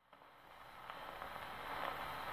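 Surface noise of a 78 rpm shellac record played on an acoustic EMG gramophone with a Burmese Colour needle: the needle running in the lead-in groove before the music, a steady hiss with a few faint clicks, rising from faint.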